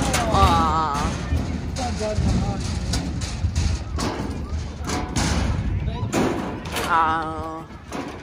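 Balls knocking against the wooden boards and hoops of a basketball toss game, several separate thumps. A voice calls out with a wavering pitch, once shortly after the start and again near the end.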